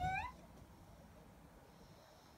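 A woman's short 'mm?' hum that rises in pitch at the very start, then near silence.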